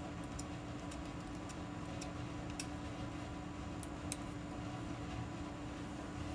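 Faint, scattered small ticks of a Take Your Pick tool's pointed end poking tiny die-cut cardstock pieces free, over a steady hum.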